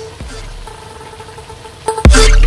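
Background music: a quiet, steady held tone, with loud music cutting in right at the end.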